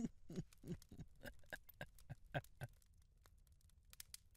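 A man's soft, breathy laughter: a quick run of chuckles, about three a second, trailing off after two and a half seconds.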